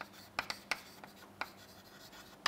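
Chalk writing on a chalkboard: a few short, faint taps and scratches of the chalk stick, bunched in the first second, with one more about halfway through.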